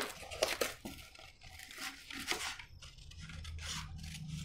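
Large tailor's scissors cutting through sheets of paper: a series of uneven snips, with the paper rustling.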